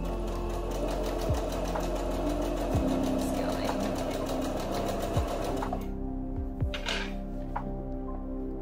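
Singer Patchwork 7285Q computerized sewing machine stitching a seam at a fast, steady rate, then stopping abruptly about six seconds in.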